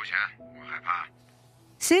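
A short line of Mandarin drama dialogue in a thin-sounding phone-call voice, in two brief phrases over soft, sustained background music. Narration starts right at the end.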